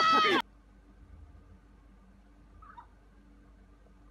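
A loud, high-pitched cry with a rising-then-falling pitch, cut off abruptly about half a second in, then only a faint low hum.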